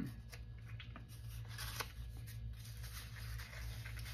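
Paper rustling as a small card is handled and slid into a fabric envelope: faint, scattered scrapes over a steady low room hum.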